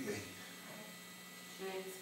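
Steady electrical mains hum in the recording, heard plainly in a pause between a man's spoken words, with the tail of a word at the very start and a brief faint voice near the end.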